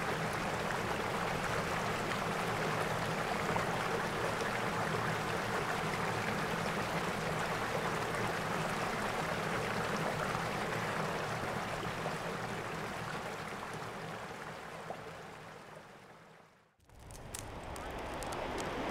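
Steady rushing of a mountain stream flowing past the camp, fading out about three-quarters of the way through. A few faint clicks follow near the end.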